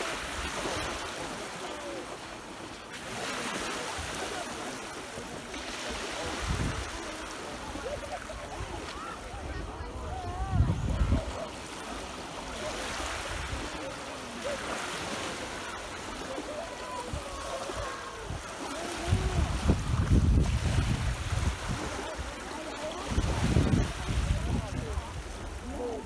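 Small sea waves breaking and washing up the shore in a steady wash, with wind buffeting the microphone in gusts now and then.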